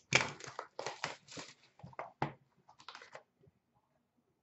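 Trading card pack wrapper being torn open and crinkled by hand: a quick run of crackling rustles that stops after about three seconds.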